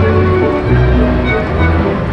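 Bally Titanic slot machine playing its bonus-round music: held notes over a sustained bass line.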